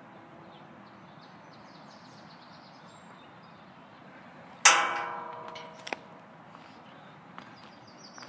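A single sharp metallic clang with a ringing tail that dies away over about a second, from the metal ring or handle of a strap-type suspension trainer knocking against the steel frame of an outdoor exercise station; a smaller click follows about a second later.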